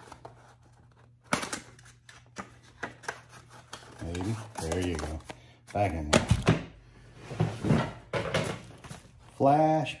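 Objects being handled: cardboard boxes and items picked up, moved and set down, with a knock about a second in, then scattered clicks and small knocks. A man's voice murmurs in the second half.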